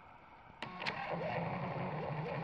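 HPRT portable thermal label printer printing a shipping label. About half a second in there are two short clicks, then its feed motor whirrs steadily as the label comes out.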